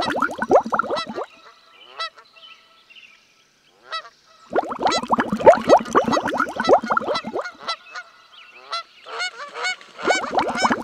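Many overlapping honking bird calls, like a flock of geese. They come in bursts: through the first second, again from about four and a half to seven and a half seconds in, and picking up near the end, with only a few scattered calls in the lulls between.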